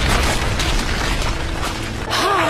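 Cartoon battle sound effects: a continuous crashing rumble of impacts and breaking debris, with rapid crackling running through it.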